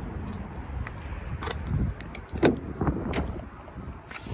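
Wind rumbling on a handheld phone microphone, with a few sharp clicks and a louder clunk a little past halfway as a car's driver door is unlatched and swung open.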